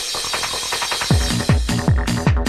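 Hard trance track: a run of fast, clicking, ratchet-like electronic percussion, then about halfway through a deep kick drum comes in on a steady, fast four-to-the-floor beat.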